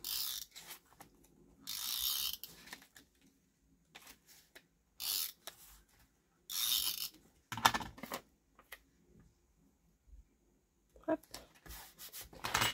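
A glue tape runner being drawn across paper in four short scraping strokes, with paper being handled and pressed down in between.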